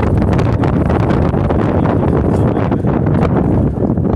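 Strong wind buffeting the phone's microphone: a loud, steady low rumble with irregular crackling gusts.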